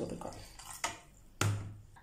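Handling knocks at a steel mixer-grinder jar as an ingredient is tipped in from a plastic bag and the plastic lid is put on: two short knocks about half a second apart, the second louder.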